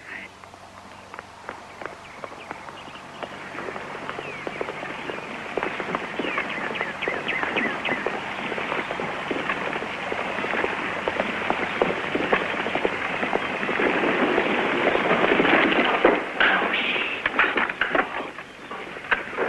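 Dense, irregular patter of sharp cracks and pops, with voices mixed in, building steadily in loudness and peaking near the end.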